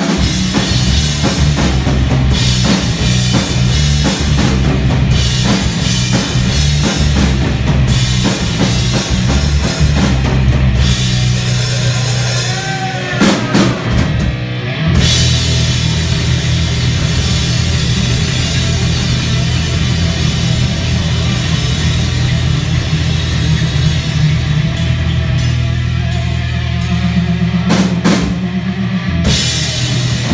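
Live rock band playing an instrumental passage on electric guitars, bass guitar and drum kit, loud and continuous. About halfway through the bass drops back briefly while a guitar slides up and down in pitch, then the full band comes back in.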